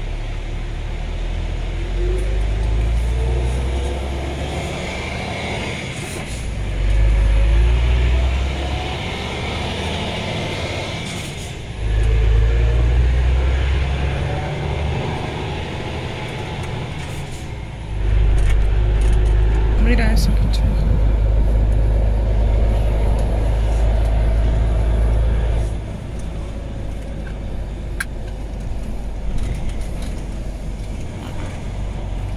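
Articulated truck's engine and road noise heard inside the cab as it drives off, with a heavy low rumble that swells and eases several times and an engine note that rises repeatedly as it pulls away.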